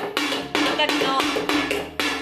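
A child rapidly beating a homemade toy drum with mallets, sharp hits about four or five a second, over background music.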